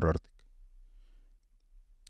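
A man's speech close to the microphone breaks off just after the start, followed by a pause of near silence with faint room tone and a faint click or two.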